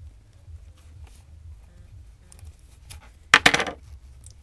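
Quiet handling as paracord is poked through a plastic side-release buckle with scissors, then about three and a half seconds in a brief, loud clatter of several sharp clicks from the hard objects knocking together.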